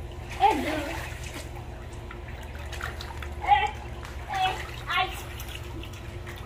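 Pool water splashing and sloshing as children swim and wade in arm floaties, with a few short bursts of children's voices over a steady low hum.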